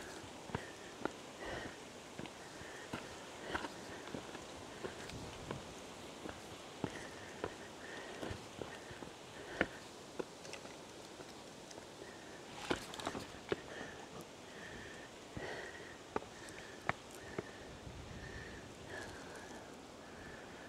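Footsteps of a hiker on rocky, stony ground: irregular, fairly quiet scuffs and sharp knocks of shoes on rock and loose stones.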